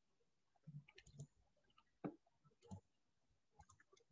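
Near silence, broken by a few faint, scattered clicks.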